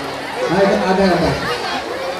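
Speech only: voices talking.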